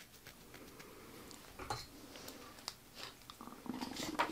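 Faint handling of a painted sheet of paper on a cutting mat: soft rustling and a few small scattered clicks, with scissors picked up near the end.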